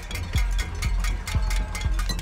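Crowd clanging metal saucepans and pot lids with spoons, a dense clatter of strikes with metallic ringing, over a steady deep thump about twice a second.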